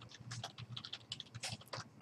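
Typing on a computer keyboard: a quick, faint run of key clicks.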